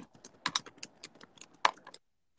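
Quiet, irregular clicking: about a dozen short, light clicks spread through a pause in the talk.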